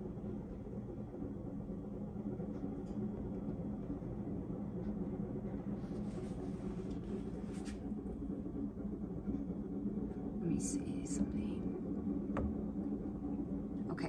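Steady low room hum, with a few brief soft breathy sounds about six and ten seconds in and a faint click near the end.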